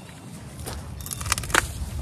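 Pruning shears cutting through a woody hydrangea stem: a few sharp cracks and clicks, closing into a quick cluster with the loudest snap about one and a half seconds in.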